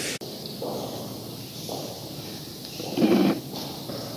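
A man's short, low vocal sounds without words, the loudest about three seconds in, over steady room hiss. A sharp click comes just after the start.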